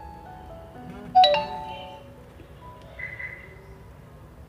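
Soft instrumental background music with held notes, and a single loud, bright chime about a second in that rings out.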